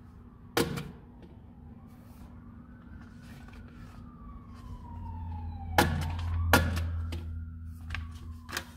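A faint siren wailing, its pitch rising and falling slowly. Sharp thunks of a desk stamp striking paper come about half a second in and twice close together near the end, while a low hum builds from about five seconds in.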